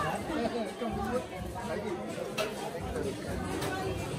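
Indistinct chatter of several people talking over each other at a buffet.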